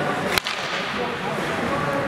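A single sharp crack of an ice hockey stick hitting the puck, about half a second in, over the steady background noise of the rink and players' voices.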